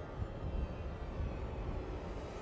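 Wind buffeting the microphone outdoors, a low uneven rumble.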